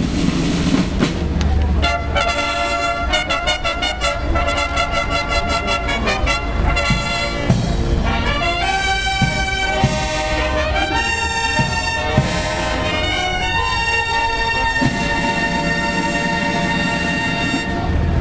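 Brass band playing a piece. It comes in about two seconds in with quick, repeated notes, moves on to longer held notes, and ends on a sustained chord just before the end.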